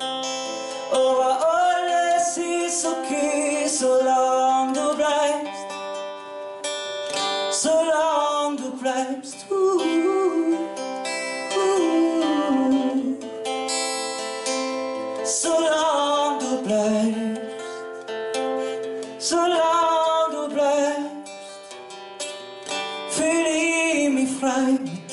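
A solo singer performing a song live, accompanied by an acoustic guitar, with the vocal phrases rising and falling in loudness.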